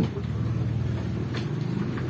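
A steady low hum of a running engine.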